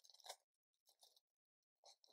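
Near silence broken by a few faint, short crinkles of a wig's packaging card being handled: one at the start, one about a second in, one near the end.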